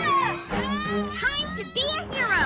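Cartoon background music with a child's voice making short, wordless exclamations over it.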